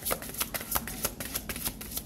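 A deck of oracle cards being shuffled by hand: a quick, irregular run of crisp card clicks and flutters, about five or six a second.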